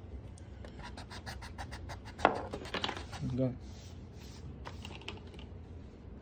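Pencil writing on paper: a quick run of short scratchy strokes, about eight a second, with one louder tap of the pencil a little after two seconds in.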